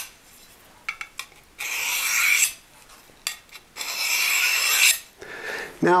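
Steel knife blade drawn along a diamond sharpening rod, making two long, high scraping strokes about two seconds apart, with light clicks of blade against rod between them.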